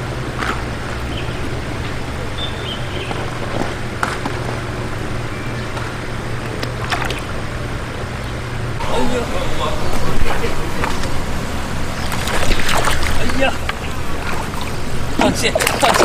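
Hooked fish thrashing at the pond surface beside a landing net, a cluster of splashes near the end; before it, a steady low hum and irregular louder noise from about halfway through.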